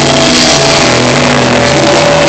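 Live rock band playing loud, electric guitars and bass holding long sustained notes over a dense wash of distorted sound, with no singing.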